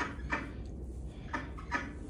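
Four short wet handling sounds, quick clicks and squelches, as hands squeeze the guts out of a slit-open fat innkeeper worm with kitchen scissors held in the hand.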